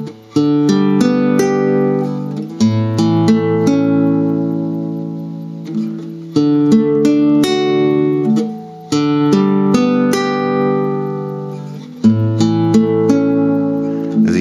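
Classical guitar played slowly, each chord picked one string at a time so the notes ring on together, in a beginner's exercise changing between D, G and A major. A new chord starts about every two to three seconds, five in all.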